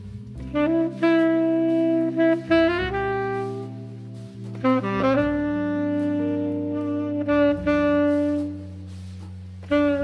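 Tenor saxophone playing a slow jazz ballad melody in long held notes over sustained Hammond-style organ chords, entering about half a second in and pausing briefly near the end before the next phrase.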